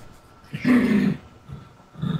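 A short non-word vocal sound from a person, lasting under a second, about half a second in.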